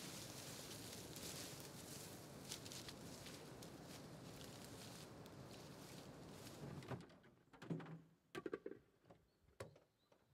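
Rustling and crunching of a person scrambling down a slope through dry grass and undergrowth, a steady noisy hiss with small cracks in it. It cuts off suddenly about seven seconds in, and a few scattered knocks and thuds follow over near quiet.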